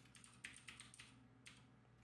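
Faint keystrokes on a computer keyboard: a handful of light, irregular taps.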